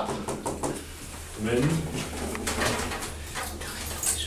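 C&M passenger lift car travelling down between floors: a steady low hum from the lift drive, with light clicks and rattles from the car.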